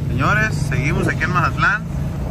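Low, steady rumble of a car driving, heard from inside the cabin with the window open, under a voice whose pitch sweeps up and down.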